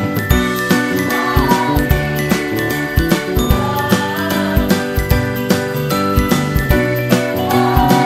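Upbeat Christmas-style background music: jingling bells and held melody notes over a steady beat.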